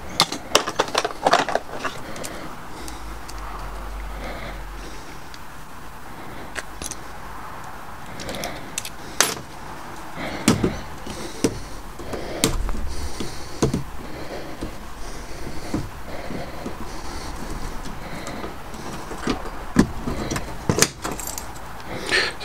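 Metal keys and a pin-tumbler lock cylinder clinking and clicking as the cylinder is handled and taken apart with its key, with scattered sharp metallic clicks.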